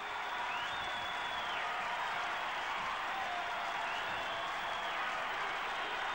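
Crowd applause and cheering from the song's intro, a steady wash of clapping. A high tone rises, holds and falls twice over it.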